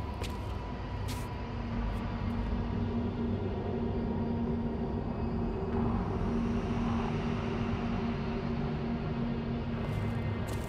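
A low, steady rumbling drone with a few held tones, swelling slightly in the middle.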